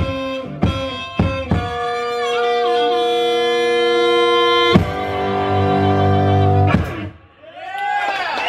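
One-man blues band ending a song: rack harmonica and electric guitar hold long chords with a few bent notes, after a steady beat of drum and cymbal hits in the first second and a half. Two last hits punctuate the held chords, and the music stops about seven seconds in.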